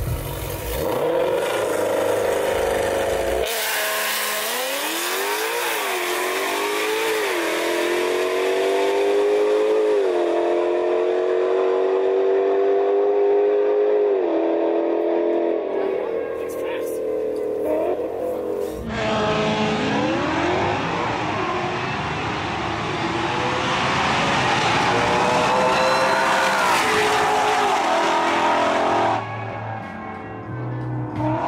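Race cars accelerating hard at full throttle down a drag strip, the engine pitch climbing and dropping back at each upshift through the gears. There are two such runs, the first from about three seconds in and the second from about nineteen seconds in, each ending suddenly.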